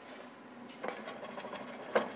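Handling noise from a skull-shaped metal baking pan being tipped over a plate to turn out a baked pancake, with two light knocks, one about a second in and a sharper one near the end.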